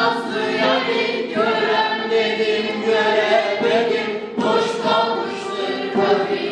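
A classroom group of young men's and women's voices singing a Turkish folk song together in unison, in held phrases with short breaks between them.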